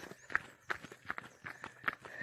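Jogging footsteps on a dirt road, a quick even rhythm of footfalls about three a second.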